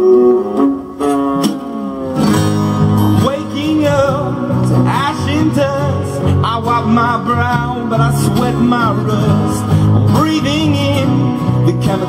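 Live acoustic band: a male voice sings with little accompaniment at first, then about two seconds in three acoustic guitars come in strumming under the lead vocal, with a second voice singing along.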